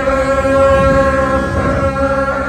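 Several Tibetan gyaling, the monastic double-reed horns, played together on a long, steady, reedy high note.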